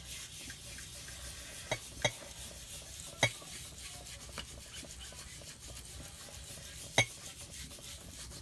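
Foam ink blending tool rubbed over paper, a steady soft scrubbing as distress ink is worked in to age the paper. A few sharp ticks come through it, two around the second second, one at about three seconds and the loudest near the end.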